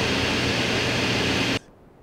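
Laptop cooling fans running flat out: a loud, steady whoosh with a low hum underneath, cutting off suddenly about a second and a half in. The noise is typical of a laptop under heavy CPU or RAM load.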